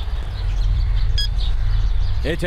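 Outdoor background: a steady low rumble with faint bird chirps, one brief sharper chirp about a second in.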